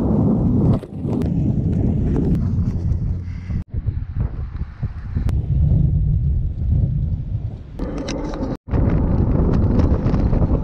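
Wind buffeting the microphone while riding, a loud, steady low rumble, broken by two brief dropouts, about a third of the way in and near the end.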